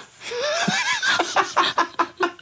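A woman and a man laughing together. It opens with a long rising laugh and breaks into a string of short bursts.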